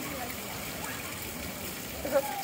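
Steady, even background hiss with faint voices in it.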